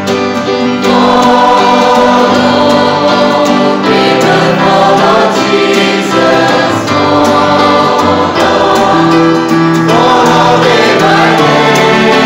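A church congregation singing a hymn together, mostly women's voices, accompanied by acoustic guitar and electronic keyboard. The singing is steady and continuous, with held notes.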